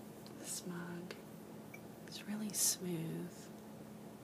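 Soft murmured voice sounds and whispery hiss, with light hand contact on a ceramic mug and a faint tick about a second in.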